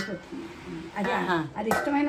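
A steel plate being set over an aluminium kadai as a lid, metal clinking against metal, with a clink at the start and another near the end.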